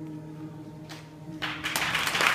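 The song's final chord dying away as a steady low hum, then audience applause starting about a second and a half in and growing louder.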